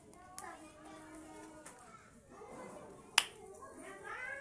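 Indistinct voices in the background, a child's among them, with a sharp click about three seconds in and a fainter one near the start.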